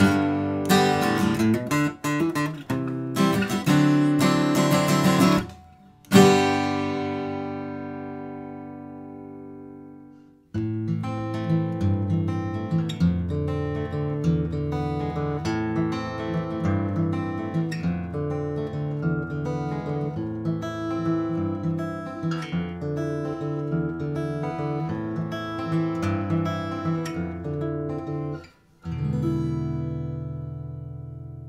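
A cheap Squier by Fender acoustic guitar strummed in chords, ending about six seconds in on a final chord that rings out and fades for about four seconds. Then a Martin D-18 solid-wood dreadnought acoustic guitar is fingerpicked in a steady run of single notes, with a short break just before the end.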